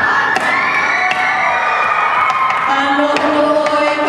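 Traditional hula kahiko chant: boys' voices rise together in one long drawn-out call, then give way to held chanted notes about two-thirds of the way through. Sharp percussion strikes mark the beat about once a second.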